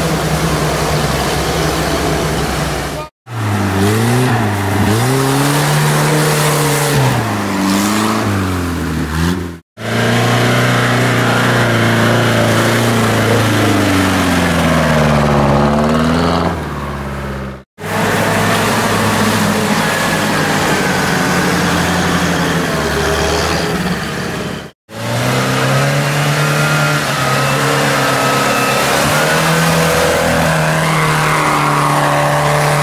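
UAZ-469 off-road vehicles' engines revving hard through mud and wet ground, the pitch rising and falling again and again with the throttle. The sound breaks off abruptly four times as one short clip cuts to the next.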